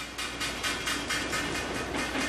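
Rapid, regular rattling over a steady low hum: the bridge of an offshore supply vessel vibrating hard as its Voith Schneider propellers run at a rotor speed that sets the ship into natural resonance.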